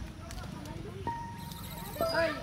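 Faint background voices, with a steady high tone held through the second half.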